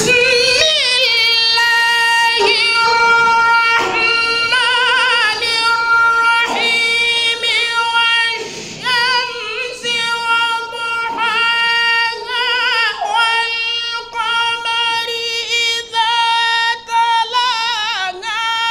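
A man's high voice chanting Qur'anic recitation (tajweed) unaccompanied into a microphone. He holds long notes near one steady pitch and ornaments them with quick wavering turns. In the second half the phrases grow shorter, with brief pauses for breath.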